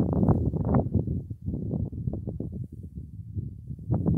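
Wind buffeting the camera microphone, an uneven low rumble that rises and falls, strongest in the first second and easing off in the middle.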